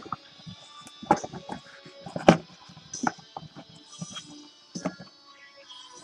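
Trading cards and packaging being handled: scattered soft clicks and rustles, with a sharper click a little over two seconds in.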